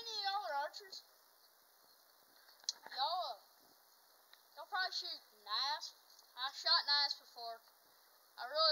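A boy talking in short, indistinct phrases with pauses between them, and one faint click just before three seconds in.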